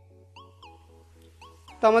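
Quiet background music: short, evenly repeated electronic notes, some sliding up in pitch, over a steady low bass. A man's voice starts near the end.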